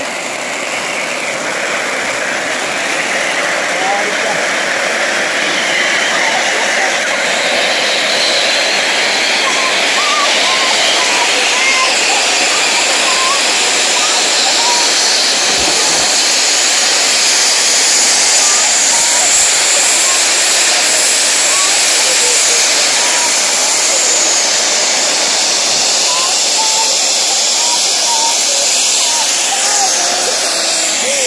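Several ground firework fountains hissing steadily as they spray sparks. The hiss builds over the first few seconds as more fountains catch, then holds loud and even.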